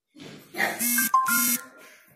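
A person's voice: two short calls in quick succession, each held on one steady pitch.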